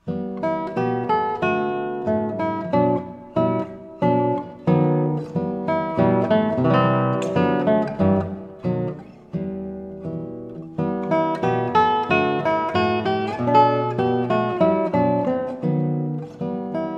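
Classical guitar playing the opening of a gentle, nostalgic piece: a plucked melody over ringing chord notes. It eases into a softer passage about nine seconds in, then swells again from about eleven seconds.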